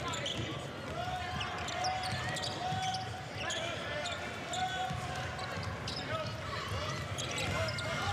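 Live basketball play on a hardwood court: a ball being dribbled, with a run of short, high squeaks from sneakers and crowd voices underneath.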